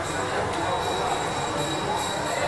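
Ringside spectators' voices, an even hubbub of talk and calls, with a thin steady high-pitched whine running through it.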